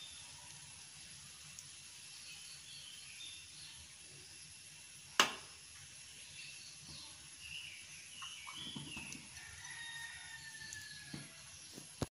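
Quiet kitchen with faint, scattered bird calls in the background. One sharp click about five seconds in, a metal spoon set down against a plastic mixing bowl.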